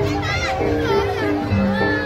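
Javanese gamelan music for a jaranan horse dance, pitched metal notes stepping through a melody over lower sustained tones, with children's voices and crowd chatter layered over it.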